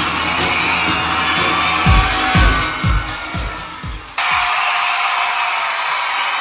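Intro music with a steady low drone and sharp beats, then a run of five deep booming hits that fall in pitch and fade. It cuts off suddenly about four seconds in, giving way to a large concert crowd cheering and whooping.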